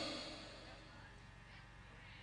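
The echo of an amplified voice dying away through a large outdoor sound system, then near quiet with only the system's faint steady low hum.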